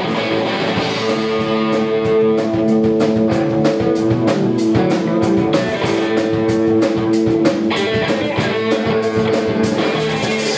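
Live rock band playing: two electric guitars and a bass guitar holding sustained notes over a steady beat on a Sonor drum kit.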